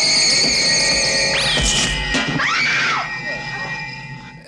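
Sci-fi film soundtrack: steady high electronic tones with sharp rising sweeps about a second and a half in, then a man's brief strained cry. It all fades out about three seconds in.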